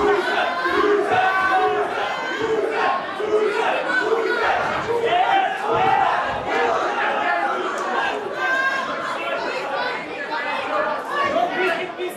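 Boxing crowd shouting and yelling, many voices overlapping, with a quick run of short repeated shouts in the first couple of seconds.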